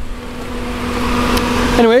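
A steady mechanical hum under an airy, fan-like rushing noise that grows steadily louder.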